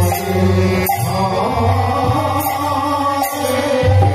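Naam sankirtan devotional chanting: men singing the holy names to a harmonium, with a mridang drum and kartal hand cymbals keeping the beat. A sharp cymbal clash comes about a second in and twice more later on.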